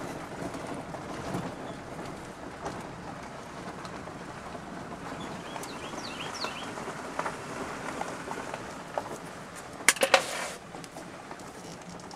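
A vehicle rolling slowly along a dirt road, heard from inside the cab as a steady noise of engine and tyres. A few faint bird chirps come about six seconds in, and a short loud clatter about ten seconds in.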